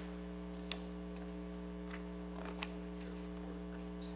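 Steady electrical mains hum in the sound system, with two faint clicks, one under a second in and one past the halfway mark.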